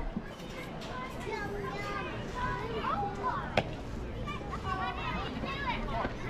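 Young girls' voices calling and chattering at a distance, unclear and overlapping, with one sharp click about three and a half seconds in.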